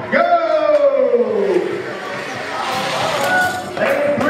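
A long shout falling in pitch near the start, then crowd voices and chatter in a large room, with another call near the end.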